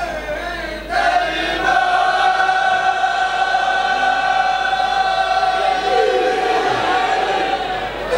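A man singing a devotional chant through a microphone and PA: a short wavering phrase, then one long held note of about six seconds that trails off near the end.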